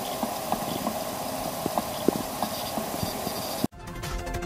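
Maxtor external hard drive making an odd noise: a steady hiss with irregular light clicks. The drive is detected but its data cannot be read, and its platters are scratched from a fall. The sound cuts off abruptly near the end.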